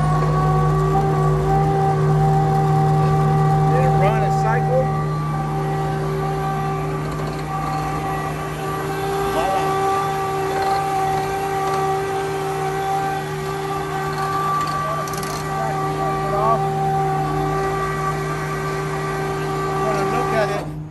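A belt trailer's hydraulically driven conveyor belt running, powered by the road tractor's diesel engine and hydraulic pump: a steady whine with several held tones that rises slightly in pitch over the first couple of seconds as the belt control valve is opened slowly.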